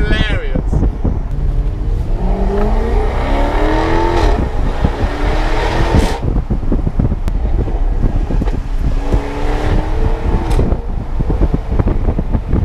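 Jaguar F-Type engine heard from inside the cabin as the car accelerates on a mountain road. The engine note rises in pitch from about two seconds in, is cut off sharply just after four seconds by a gear change, and rises again briefly near ten seconds.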